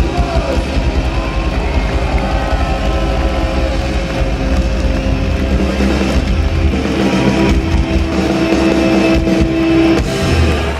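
Live Oi! punk band played loud through a PA: distorted electric guitar and bass over driving drums. About seven seconds in the drumming drops away and a held distorted guitar note rings on as the song ends.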